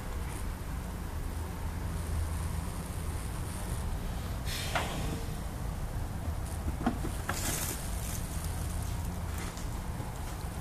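A steady low hum, with a few brief rustles and clicks about halfway through and again a little later as hands handle wiring in a car's engine bay.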